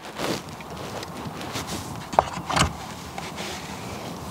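Steady hiss of a car cabin with the engine running and the air vents blowing, broken by a few short rustles and knocks, about a quarter second in and again around two to two and a half seconds in, as plush dice hanging from the rear-view mirror are handled.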